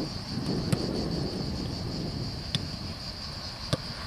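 A steady, high-pitched chorus of insects runs throughout. Over it come three sharp knocks of footballs being kicked on grass, the loudest about a second in, the others near the middle and near the end.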